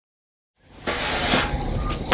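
Silence, then from a little over half a second in a steady rustling noise, wool suiting fabric being handled on a wooden table.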